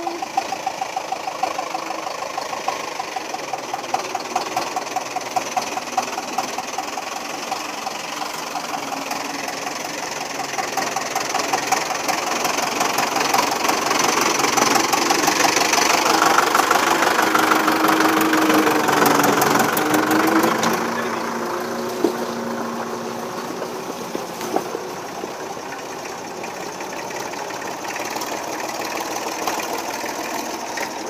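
Small diesel farm tractor engine working under load on a muddy uphill track, with a steady knocking beat. It grows louder about halfway through as the tractor comes close past, then drops back.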